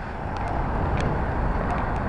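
Steady outdoor street noise with a low rumble of traffic, broken by a few faint clicks.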